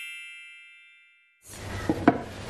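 Shimmering chime sound effect of many bell-like tones ringing out and fading away to silence in just over a second. Faint room sound with a few small clicks comes back near the end.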